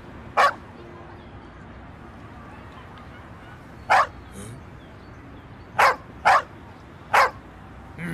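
A dog barking five times in short, sharp barks: one near the start, one about four seconds in, then three in quick succession near the end.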